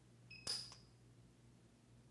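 PUK U5 micro TIG welder firing a single spot weld as the electrode is held against the steel: a faint high tone, then one short, sharp snap about half a second in.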